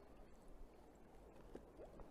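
Near silence, with a few faint scattered clicks and knocks.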